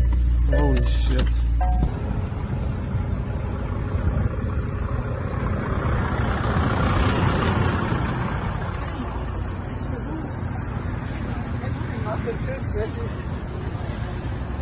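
Road traffic: vehicles driving past close by, a steady rumble of engines and tyres that swells in the middle and then fades.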